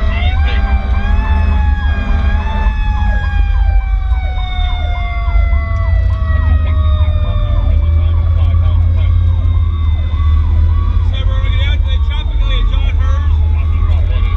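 Sirens on a 2002 Pierce Lance rescue truck running to a call. One siren tone rises briefly, then slowly winds down in pitch, under another siren's fast repeating yelp at about two cycles a second, over steady low engine and road rumble.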